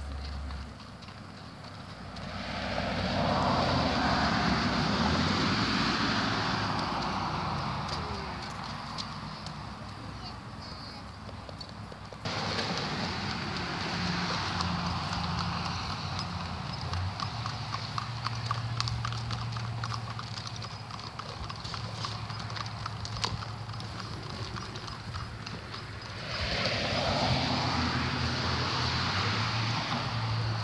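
A Haflinger horse walking on gravel, its hooves clopping and crunching step by step, clearest through the middle of the stretch. Two longer spells of a broad rushing noise, one a few seconds in and one near the end, lie over the steps.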